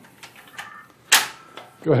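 A single sharp metallic clack about a second in, ringing briefly, from the steel jaw mechanism of a Curt A20 fifth wheel hitch as its release handle is worked to free the kingpin. Faint handling rattles come before it.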